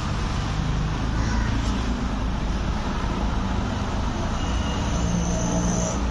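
Steady street traffic noise: a constant low rumble of vehicle engines with no break, and a faint high-pitched whine near the end.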